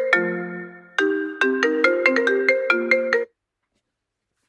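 A phone ringtone: a melody of quick, bright notes in two phrases with a held note between them, cut off abruptly about three quarters of the way through.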